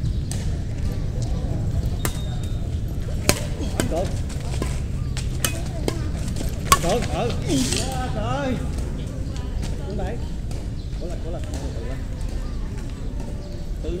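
Badminton rackets striking a shuttlecock during a rally: a string of sharp hits, the loudest about three and seven seconds in, over a steady low rumble.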